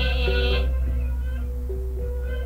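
Sundanese degung gamelan music: a deep gong's low ring carries through from a stroke just before, under a woman's held, wavering sung note that ends about half a second in. Short, steady, pitched instrument notes follow.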